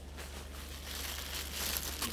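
Dry crinkling and rustling of dried Chondrus crispus (Irish moss) and its plastic bag as a handful of the seaweed is pulled out by hand, building slightly toward the end.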